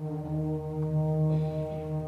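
Concert band holding a sustained low chord, with brass prominent and a strong bass note. The chord enters right after a brief silence and stays steady.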